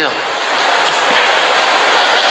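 A loud, steady rushing noise like a hiss or whoosh, with no pitch, starting suddenly.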